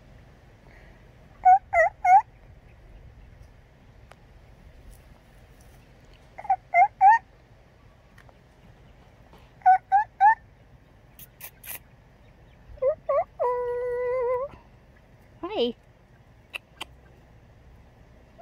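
Domestic white turkeys calling: short notes in groups of three, a few seconds apart, then a longer held note about three-quarters of the way in and a quick falling call soon after.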